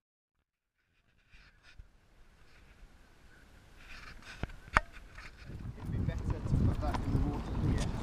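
Near silence at first, then faint voices and handling noise. Two sharp knocks come about halfway through, and a low rumble builds toward the end as a group carries plastic chairs and a boat along a path.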